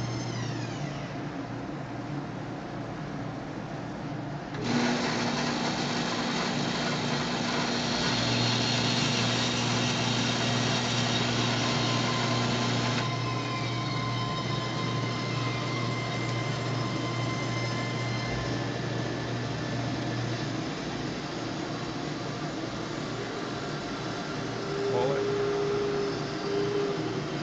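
Shop machinery running: a band saw and a dust collector hum steadily. About five seconds in, a louder rush of noise with a steady tone comes in abruptly and stops just as abruptly some eight seconds later.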